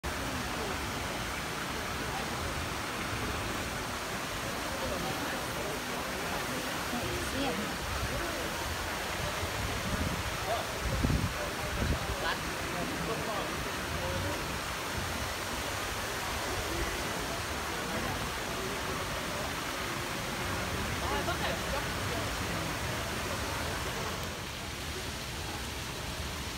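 Steady, even rush of running water from the pond's water feature, with faint voices of people in the background. A couple of low thumps come about halfway through.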